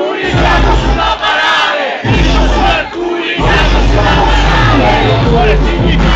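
Concert crowd shouting and singing along over a loud hip-hop beat. The bass of the beat drops out briefly about three times, leaving the voices alone.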